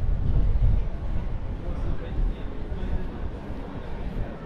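Wind buffeting the microphone in an irregular low rumble, strongest for about the first second and then easing, over faint voices of people in the street.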